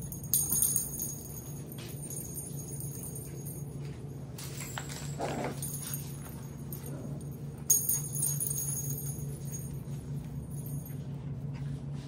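A jingling puppy toy with a bell, shaken twice: once about half a second in and again, loudest, just before eight seconds in, over a steady low room hum.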